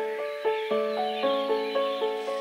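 Slow, gentle solo piano melody, notes struck about two to four times a second and left to ring. A wavering bird call sounds faintly above the piano during the first second and a half.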